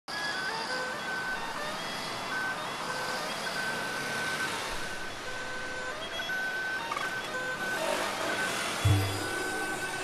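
Road traffic passing, a steady hiss of tyres and engines, with sustained music tones laid over it. A deep bass hit comes near the end.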